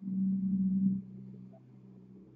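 A low, steady droning hum, loud for about the first second and then dropping away to a faint hum.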